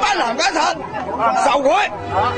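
Several villagers talking loudly over one another in Chinese, their voices raised.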